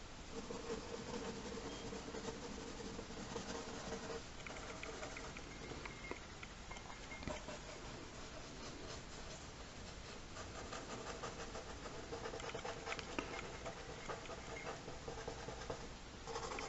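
Faint scratching of a mechanical pencil on paper in quick, repeated shading strokes.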